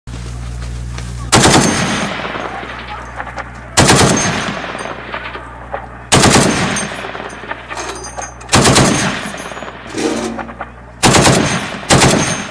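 .50-calibre M2 Browning heavy machine gun firing five short bursts about two and a half seconds apart, each burst echoing as it dies away.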